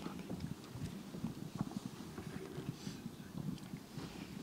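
Faint, irregular taps, knocks and shuffling as several people move about and handle things at the Torah reading desk.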